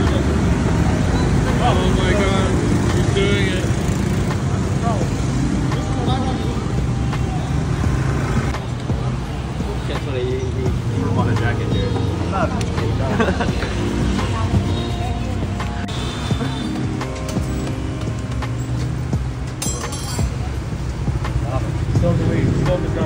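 Steady street traffic noise with indistinct voices.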